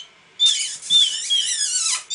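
Canary chick begging for food while being hand-fed, giving rapid high-pitched cheeps with falling notes. The calls start about half a second in and end in a run of notes sliding down in pitch.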